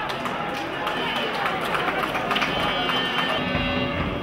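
Voices over football stadium ambience, with music coming in near the end.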